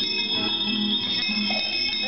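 Several small handbells ringing at once, shaken by young children, with steady high ringing tones that overlap one another.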